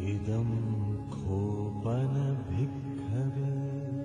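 Chant-like music: deep voices intoning over a held drone, with several phrases, about one a second, each sliding up in pitch as it starts.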